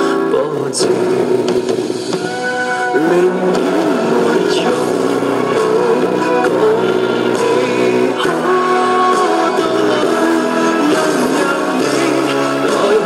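Recorded Cantonese pop song playing.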